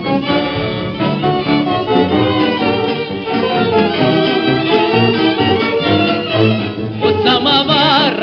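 A 1930s dance orchestra playing an instrumental passage, with violins carrying the melody. A singer's voice with a wide vibrato comes back in near the end.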